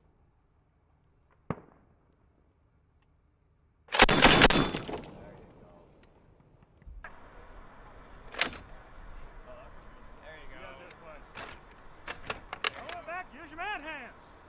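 Mk 19 40 mm automatic grenade launcher firing a short burst of several shots in quick succession, loud, with a trailing echo. Later, a few scattered sharp cracks over background noise and voices.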